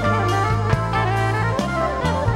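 Live jazz band of saxophone, guitar, bass, keyboards and drums playing an instrumental tune: a gliding lead melody over a steady bass line and regular drum hits.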